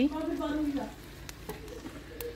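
A spoon lifting and serving pieces of cooked ojri (tripe curry) from a pot onto a plate, with a faint hiss and a few light clicks. A drawn-out spoken word comes before it.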